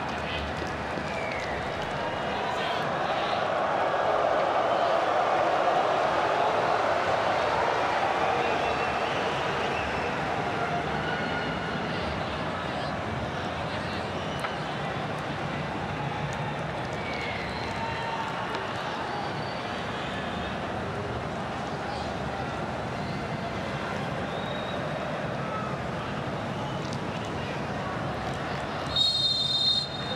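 Large stadium crowd noise: a steady din of many voices that swells a few seconds in and then settles. Near the end comes a short, high whistle blast, the referee's signal for the second-half kick-off.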